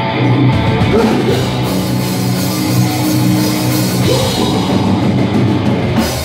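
Hardcore band playing live and loud: distorted electric guitars, bass guitar and a drum kit together.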